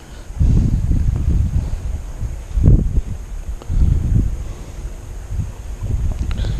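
Wind buffeting the microphone: a low, uneven rumble that swells and drops in gusts.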